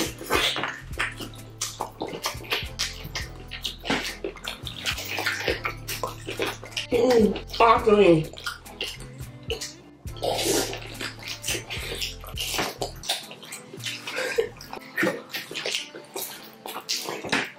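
Close-miked wet eating sounds: fufu dipped in slimy ogbono soup being squished by hand and chewed, with many sharp lip smacks and mouth clicks. A hummed "mmm" about seven seconds in.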